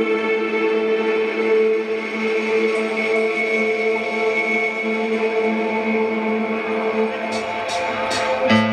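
A rock band playing live in an arena: a slow intro of long, steady held chords with no vocals. A few faint high ticks come near the end.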